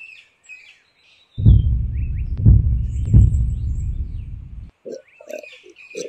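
Cartoon sound effect of the owl biting into the lollipop: a loud, low crunching noise with three harder hits that stops abruptly after about three seconds. Light cartoon bird chirps come before it.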